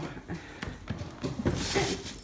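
Kittens playing: scattered light taps and knocks, with a brief rustle about one and a half seconds in.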